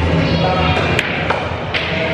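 Music playing with a murmur of voices, and a single sharp click about halfway through from a pool shot.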